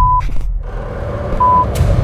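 Two short test-tone beeps of the kind that goes with colour bars, one at the start and one about a second and a half later, over a loud, deep rumble, with brief crackles of static between them.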